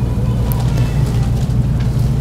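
A steady low hum of room noise, with a faint short paper rustle about half a second in as a sheet of paper is handled at the pulpit.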